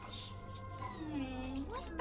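A young woman's long, sing-song "hmmm" from the cartoon's soundtrack, dipping in pitch and rising again near the end, over a steady low hum and background score.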